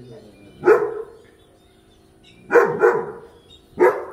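A dog barking four times: one bark, a quick pair, then a last bark near the end. It is warning off another dog that has got onto the grounds.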